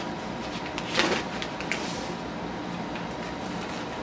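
A small cardboard package being handled and opened by hand: one sharp snap about a second in, then a few faint ticks and rustles.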